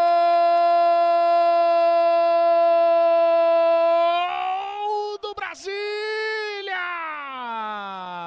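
A sports commentator's long Portuguese goal shout, "Gol" held on one loud steady high note for about four seconds, marking a goal just scored. It then breaks into shorter shouted words, and the pitch slides down near the end.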